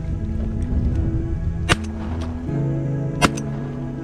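Background music with held notes, broken by two sharp shotgun shots about a second and a half apart, the second a little louder.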